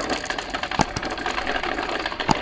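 A handful of glass marbles clattering as they roll and tumble down a cardboard spiral marble run: a dense, rapid rattle of small clicks, with two sharper clicks a little under and at about one second in.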